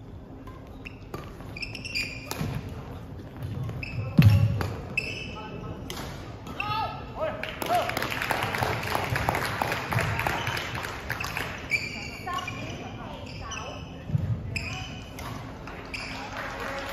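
Sneakers squeaking in short chirps on a wooden sports-hall floor, with sharp hits and footfalls during badminton play; a heavy thump about four seconds in is the loudest sound. Voices of people in the hall run underneath.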